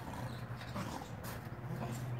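An American bulldog pushing and lifting a pan on dirt ground with its mouth: the pan scrapes and gives a couple of sharp knocks past the middle, with the dog's breathing, over a steady low hum.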